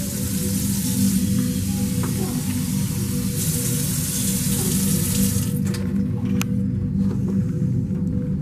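Kitchen faucet running into a stainless steel sink, over a steady bed of background music. The water shuts off about five and a half seconds in, and a single sharp click follows about a second later.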